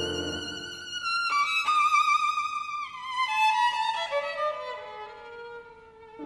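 Violin playing a melodic line with vibrato. It starts on a high held note and steps down gradually into the instrument's middle register.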